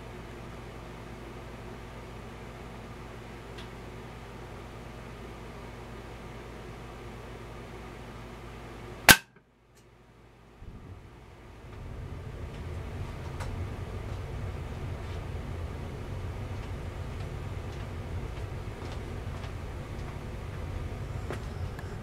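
A single shot from a Seneca Aspen .177 PCP air rifle, on low power, with the pellet striking a plywood target: one sharp crack about nine seconds in. After it the sound briefly drops out, then a steady low background noise returns.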